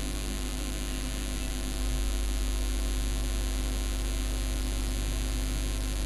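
Steady electrical mains hum with hiss and static, the recording's own background noise; the low hum gets louder about two seconds in.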